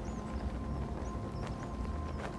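Quiet outdoor ambience: a low rumble with a few faint, short high chirps and a soft steady tone underneath.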